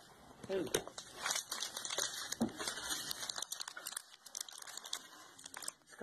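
Foil Pokémon booster pack wrapper crinkling and crackling in the hands as it is picked at to tear it open; the pack is not opening easily.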